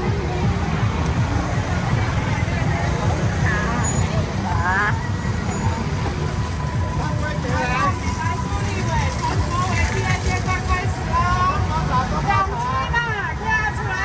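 Crowd chatter from many people on a busy street, over the steady low rumble of vehicle engines. Individual voices stand out more in the second half.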